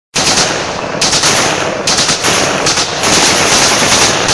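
Automatic rifle fire in long, rapid bursts that run almost without pause. It starts abruptly.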